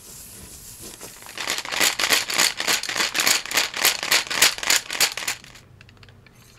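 Colored pencils rattled in a plastic cup: a rapid run of rattling strokes, about four a second, starting about a second and a half in and stopping shortly before the end.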